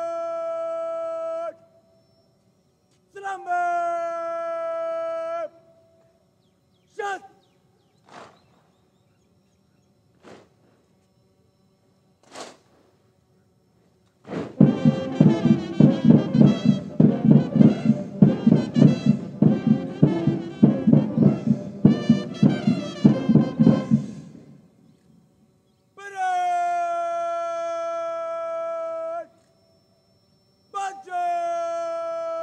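A parade commander shouting long drawn-out drill commands, each held on one pitch, with a few short barked commands in between. In the middle, about ten seconds of military band music with a steady beat. Another long drawn-out command comes near the end.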